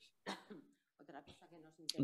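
Faint throat clearing and breaths in a pause, in a near-quiet room.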